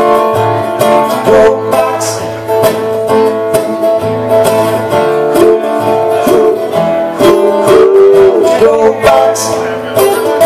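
Acoustic guitar strummed in a steady rhythm, played live as an instrumental passage between sung lines.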